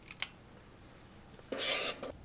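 Two quick clicks of a spring-loaded metal portion scoop dropping batter into a paper cup, then, about a second and a half in, a half-second rasping scrape of the scoop against the stainless mixing bowl.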